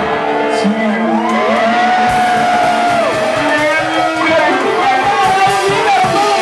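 A live band playing, with electric guitar and a singer at the microphone, and several voices from the crowd around him joining in.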